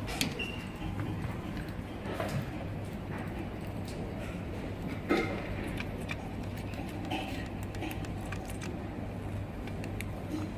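Quiet room tone with a steady low hum, and a few faint clicks of a micropipette and plastic microwell being handled on the bench: one at the start, one about two seconds in and one about five seconds in.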